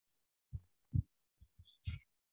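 A few soft, low thumps at uneven intervals, about five in two seconds, the last one with a brief hiss.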